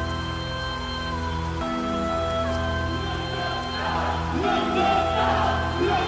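Intro music of a Greek hip-hop track: held chords that change every second or so, with more layers coming in during the second half, before the beat drops.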